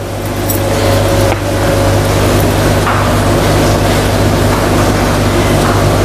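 Steady hum of an aquarium water pump with the rush of circulating water, picked up close to the tank.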